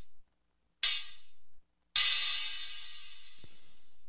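Synthesized analog-style hi-hat from Reason's Kong Drum Designer Hi-Hat module, played on its last two hit types, each with more decay than the one before. A shorter hit comes about a second in; near the two-second mark the open hit rings out for about two seconds.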